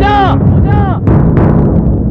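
Film soundtrack: short wailing tones that rise and fall, then about a second in a heavy, deep boom that slowly dies away.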